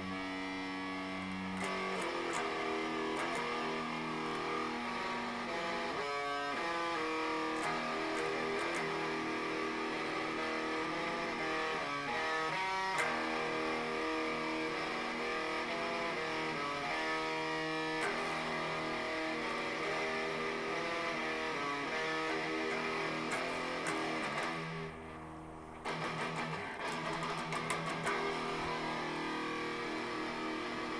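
Electric guitar played freely, a continuous run of picked notes and chords with no accompaniment, broken by a brief pause near the end before the playing picks up again.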